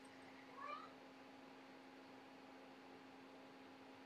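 A cat's single short, faint meow, rising in pitch, about half a second in, over a faint steady hum.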